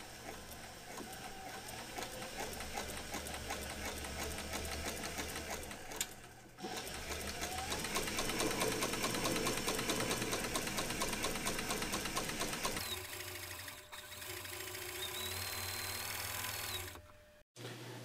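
Cobra Class 4 leather sewing machine stitching a liner onto a leather belt, its needle running in a fast, even patter. It pauses briefly about six seconds in, runs louder for a while, then more quietly, and stops about a second before the end.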